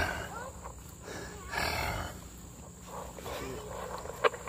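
German Shepherd puppy growling in rough play while mouthing a person's hand, loudest for about a second a little after the start.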